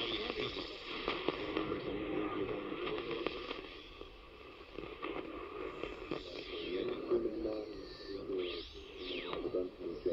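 Portable multiband radio tuned to medium wave at night, carrying a distant station's speech through static and clicks. Near the end come whistling tones that sweep up and down, the heterodyne whistles of neighbouring stations as the dial is tuned.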